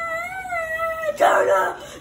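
A young boy's long, high-pitched wordless wail, wavering slightly, held for about a second. It is followed by a louder, rougher shout.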